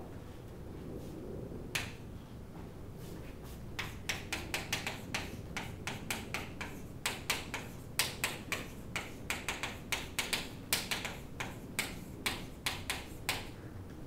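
Chalk tapping and scratching on a blackboard as a line of text is written: a rapid run of sharp clicks, several a second, from about four seconds in until shortly before the end, after one lone click about two seconds in.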